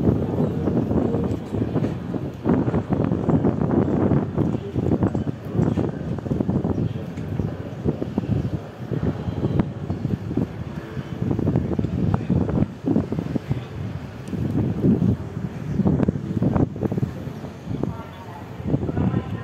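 Wind buffeting the microphone: a loud, gusty, low rumble that rises and falls unevenly throughout.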